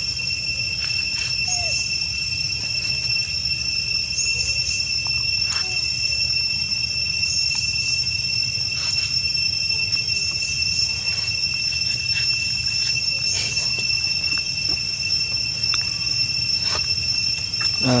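A steady, high-pitched insect drone, holding one pitch throughout, with a few faint clicks scattered through it.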